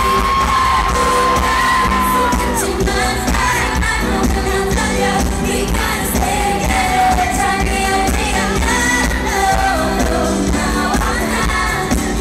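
K-pop song performed live by female singers over a steady bass beat, as heard from an arena audience. One long high note is held for the first two and a half seconds, followed by shorter sung lines.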